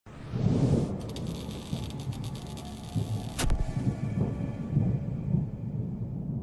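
Cinematic logo-intro sound effects: a low rumble with flickering crackles over the first few seconds and one sharp hit about three and a half seconds in.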